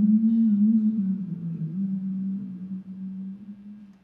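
A singer holding a low final note that wavers slightly in pitch and slowly dies away, ringing in the cathedral's reverberation.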